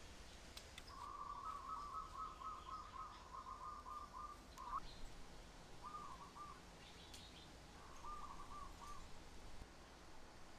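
A bird's faint trilling call, heard outdoors: one long, even trill of about three seconds, then two short trilled phrases later on.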